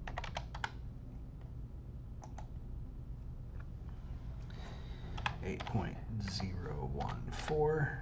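Computer keyboard typing as numbers are entered into a spreadsheet. There is a quick run of keystrokes at the start, two more about two seconds in, and further keystrokes in the second half.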